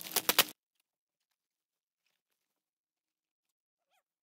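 A few quick crackles of a plastic bubble-wrap package being handled as its sticker seal is peeled, cut off after about half a second by dead silence.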